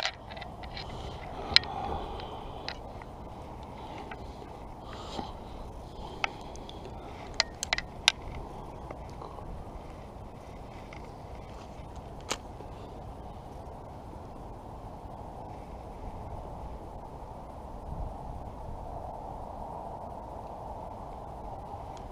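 Steady outdoor background hiss with a few scattered sharp clicks from the fishing rod and reel being handled, the clearest about a second and a half in and about twelve seconds in.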